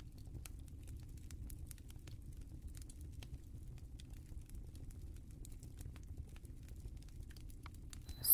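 Wooden cooking stick stirring dry maize flour in a metal pot: faint, irregular light clicks and scrapes of wood on the pot.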